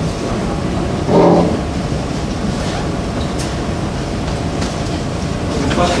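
Steady low room rumble with a short vocal sound from a person about a second in, and a voice starting to speak at the very end.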